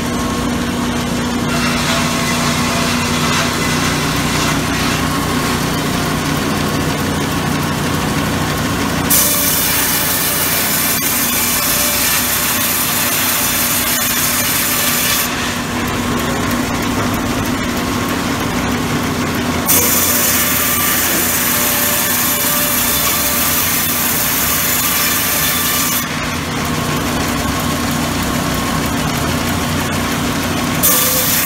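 A sawmill's saw runs with a steady machine hum and makes two cutting passes through a teak log. Each pass is a bright, hissing rip of about six seconds, starting a little louder as the blade enters the wood, one about a third of the way in and one about two-thirds of the way in.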